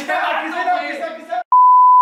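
A loud, steady, single-pitch bleep tone is edited in near the end and cuts in abruptly after a voice. It is the classic test-tone bleep laid over colour bars.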